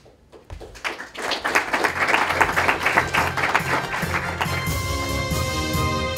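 Audience applauding, a dense patter of many hands clapping that starts about a second in. A little over four seconds in it gives way to outro theme music with steady held notes.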